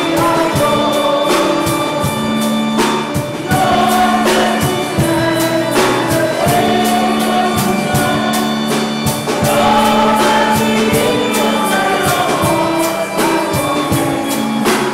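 A choir singing a hymn with instrumental accompaniment, over a steady percussion beat.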